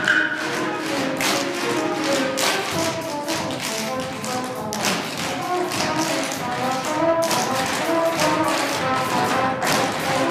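Tap shoes clicking on a stage floor in quick, irregular runs of taps, over music playing throughout.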